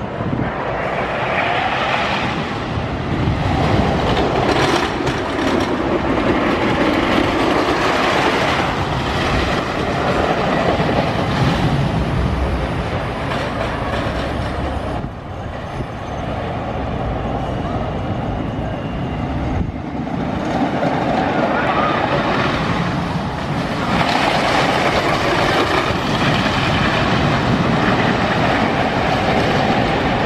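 Wooden roller coaster train running along its track: a continuous rumbling clatter of wheels on the wooden structure that swells and fades as the train passes, breaking off abruptly twice around the middle.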